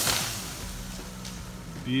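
A heavy thump right at the start that dies away within half a second: a cut chunk of treetop landing on the ground.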